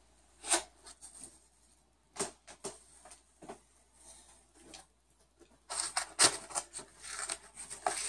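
Stepper motors and parts being handled in a foam-lined cardboard box: a few scattered light knocks and clicks, then, about two-thirds in, denser rustling and scraping of cardboard and foam with one sharper click.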